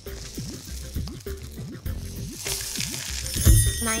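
A homemade rain stick, a cardboard tube with rice and foil springs inside, tilted so the rice trickles through with a soft rain-like hiss, over background music. A low thump near the end.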